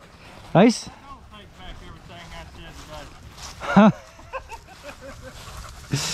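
A dog gives two short, loud barks, one about half a second in and another near four seconds in.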